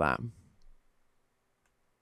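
A man's voice finishing a word, then near silence broken by two faint clicks.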